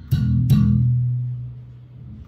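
Fender Made in Japan Modern series Jazz Bass with active electronics, plucked: two notes about half a second apart, the second ringing on and slowly fading. It has a hi-fi tone.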